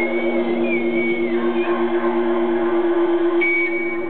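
Live band music heard from within a concert crowd: a high, wavering tone glides up and down over a steady pulsing low note. It comes in briefly again near the end.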